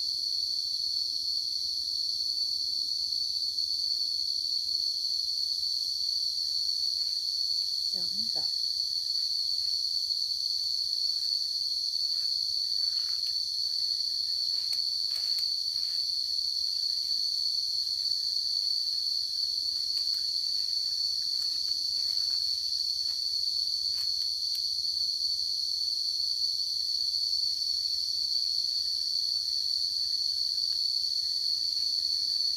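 Steady, high-pitched drone of insects, unbroken throughout.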